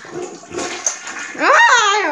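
Toilet flushing, a rush of water, broken off about a second and a half in by a child's loud shriek.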